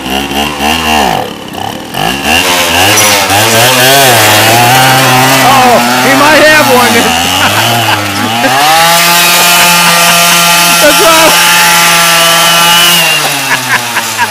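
A vintage moped's small engine buzzing loudly, faltering briefly about a second in, then revving up and down unevenly before holding a high, steady rev for several seconds and dropping back near the end.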